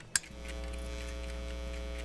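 A switch clicks, then a steady electrical hum with a low buzz sets in and holds: the time machine's sound effect as it is switched on.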